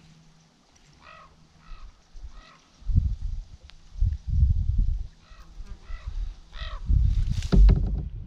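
A bird calls in two runs of three short, evenly spaced notes. Loud low rumbling noise comes in three bursts, the last ending in a sharp knock near the end.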